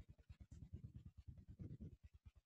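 Near silence: faint low background noise that pulses evenly, about ten times a second.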